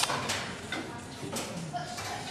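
Voices in the background of a large echoing hall, with a sharp knock right at the start and a few weaker knocks after it.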